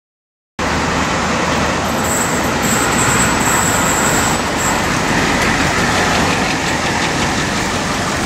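Steady rushing vehicle noise that starts abruptly about half a second in and holds at an even level.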